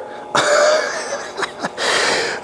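A man laughing breathily: two long exhaled bursts, the first starting about a third of a second in and fading over about a second, the second near the end.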